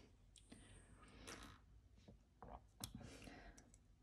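Very faint clicks and soft handling noises of a person taking a sip of a drink, a few small sharp clicks among them.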